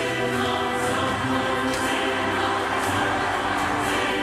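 Film trailer soundtrack: a choir singing over a steady musical backing.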